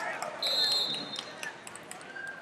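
Wrestling shoe squeaking on the mat: one high squeal just under a second long, about half a second in.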